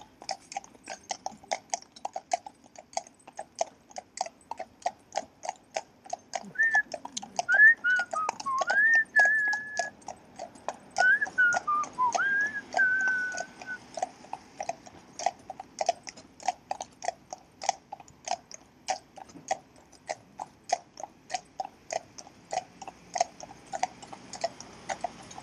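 Steady clip-clop of a pair of Friesian horses' shod hooves on tarmac at a walk, about four hoofbeats a second. Partway through come a few whistled notes that slide up and down and hold, then stop.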